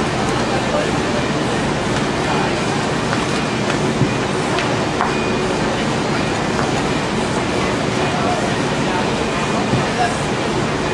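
Steady rushing background noise, with faint voices underneath and a few light knocks.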